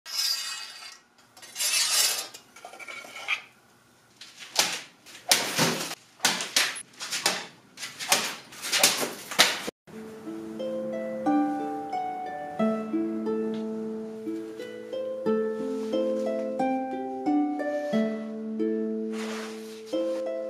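Metal clinking and scraping in a quick run of short strokes, some ringing, as the katana's blade and brass fittings are handled. From about ten seconds in, plucked-string music like a harp takes over.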